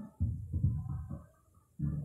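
Singing in short phrases separated by brief pauses, with little sound above the middle range.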